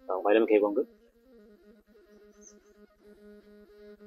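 A man's voice says a short word in the first second, then soft background music of sustained low notes that shift slowly in pitch.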